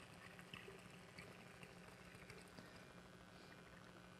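Near silence, with faint alcohol being poured from a bottle into a glass.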